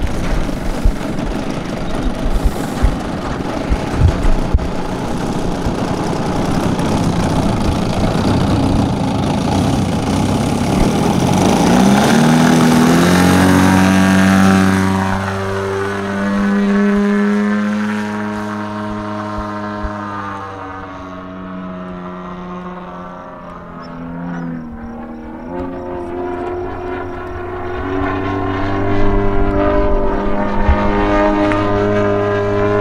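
DA 120 twin-cylinder two-stroke gas engine with tuned pipes on a 140-inch RC Bushmaster plane. It is loud and rough up close for the first dozen seconds, then becomes a clear engine note in flight whose pitch rises and falls as the plane passes. It fades for a few seconds and grows louder again near the end.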